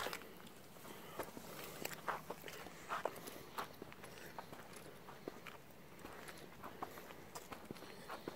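Faint footsteps on a leaf-strewn path: soft, irregular crunches and scuffs, a few of them a little louder than the rest.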